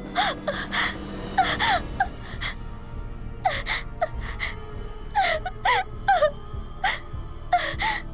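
A woman gasping and moaning in short, strained cries, bunched in twos and threes, as she struggles up from the floor in pain. Tense background music plays underneath.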